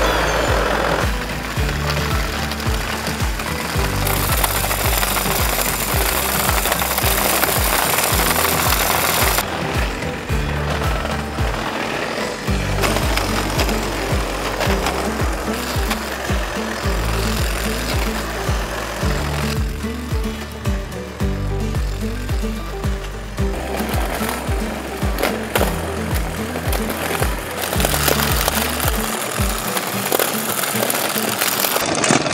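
Background music with a steady beat and bass line, mixed with the harsh whirring and scraping of a STIHL RG-KM steel-wire weed brush spinning against the ground to strip out weeds. The scraping noise is heaviest in stretches partway through and near the end.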